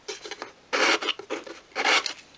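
180-grit sandpaper rubbed by hand over the edges of a small varnished obeche-wood workbench, wearing through the varnish in about four short rasping strokes. The two louder strokes come about a second in and at the end.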